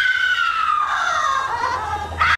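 A high, drawn-out wailing cry that slides slowly down in pitch over about two seconds, with a second, lower wail joining about a second in.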